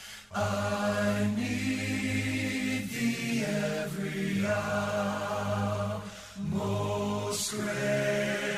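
Choir singing unaccompanied in long held chords, with brief breaks between phrases about three and six seconds in.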